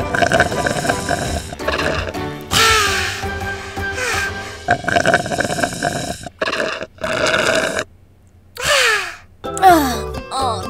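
Slurping through a drinking straw from a slushy drink, in several noisy pulls of a second or so each, with sharp starts and stops and a brief pause near the end, over background music.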